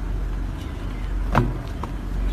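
A steady low outdoor rumble, with one sharp knock about a second and a half in as the lion dancers push off from the metal pole tops to jump to the next pole.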